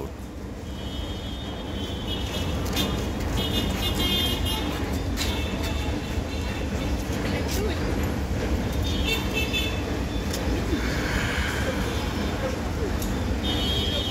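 Steady low rumble of vehicle noise, with several short high-pitched tones, each about a second long.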